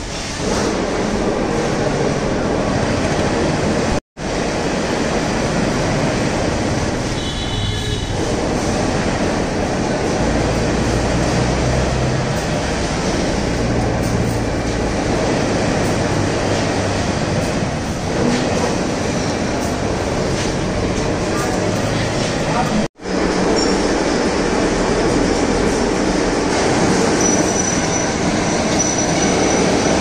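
Loud, steady machinery noise in a workshop, a dense rumble and clatter with voices faintly underneath. It cuts out abruptly twice.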